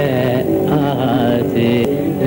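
A man singing a slow, ornamented melody with harmonium accompaniment, in short phrases that glide up and down in pitch.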